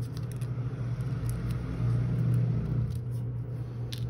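A steady low rumble that swells louder around the middle and then eases off. A few light snips of small scissors cutting paper and tape sound over it.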